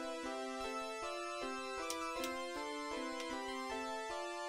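Polyphonic synth patched on an Axoloti board, playing repeating note patterns layered through feedback delay lines set up as a looper. It is a steady run of short notes, about five a second, at several pitches, with two sharp clicks about two seconds in.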